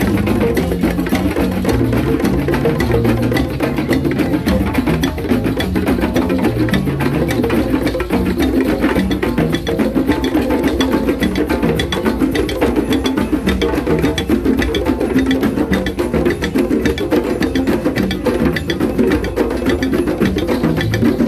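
Community drum circle playing together: djembes and congas struck by hand, stick-played dunun bass drums, timbales and a shekere, in a fast, dense, unbroken rhythm with a low bass line moving between a few notes.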